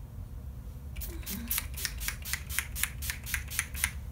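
Urban Decay All Nighter setting spray pump bottle misting the face: a quick run of about a dozen short spritzes, roughly four or five a second, starting about a second in.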